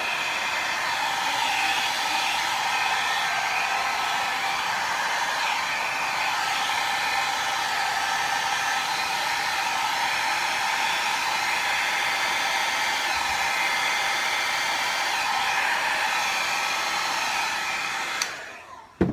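Hair dryer running steadily, blowing wet acrylic paint across a canvas in a Dutch pour; it cuts off at the very end.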